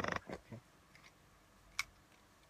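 A man's voice trailing off at the start in a brief creaky, rattling sound, then low room tone broken near the end by one sharp click.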